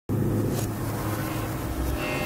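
Logo-intro sound effect: a low, steady engine-like rumble that starts abruptly, with a brief whoosh about half a second in.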